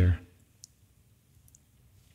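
A man's spoken word ends, then a quiet pause with two faint, short clicks.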